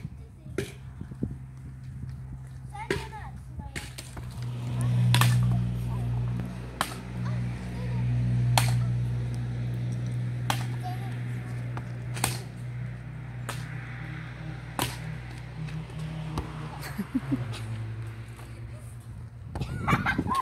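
A small rubber ball being hit back and forth by hand, a sharp smack every second or two, over a steady low hum.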